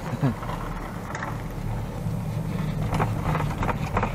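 Low steady rumble of a moving chairlift ride, with a few faint clicks and knocks from the lift.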